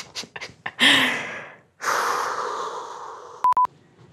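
A teenage boy laughing in breathy bursts without words: a sharp gasp about a second in, then a long exhale that slowly fades. Near the end comes a short electronic beep.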